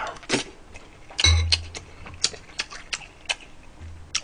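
Close-miked chewing of a mouthful of rice mixed with braised pork and radish: irregular wet mouth clicks and smacks, several a second, with a short low hum a little after one second in.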